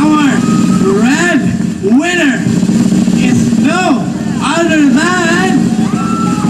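Excited shouting and cheering voices over a PA: a string of loud rising-and-falling yells, about one a second, without words.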